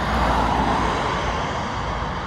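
Road traffic noise: the steady rush of cars passing on the road.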